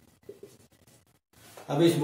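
Marker pen writing on a whiteboard: a few faint, short scratchy strokes. A man's voice then starts speaking near the end.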